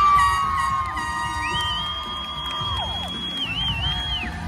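Spectators cheering, with long, high-pitched held screams: one lasts about three seconds, and a higher one begins partway through and wavers near the end.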